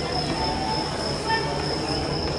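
Stadium ambience: a steady background hubbub with a constant high-pitched whine running through it and faint distant voices.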